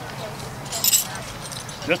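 A brief metallic jingle about a second in, from a steel trap's chain being picked up and handled.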